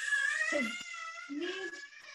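A toddler's long, high-pitched whine, wavering a little in pitch, with a couple of short low adult murmurs underneath.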